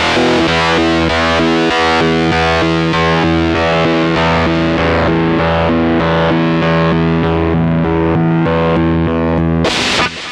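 Electric guitar played through a Stone Deaf Rise & Shine fuzz pedal: a heavily fuzzed, distorted riff of sustained notes. Just before the end comes a sharp, loud strum.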